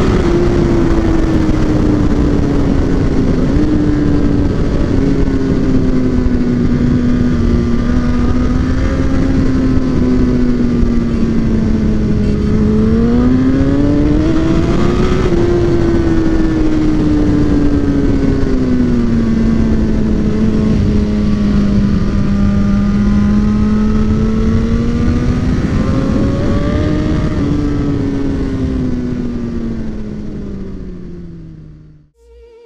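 Sport bike engine running at cruising revs under heavy wind noise. Its note climbs twice as the throttle opens, about halfway through and again near the end, and the sound fades out at the very end.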